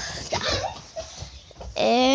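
Mostly quiet with a few faint short sounds, then, near the end, a child's voice begins a held, wavering vocal sound.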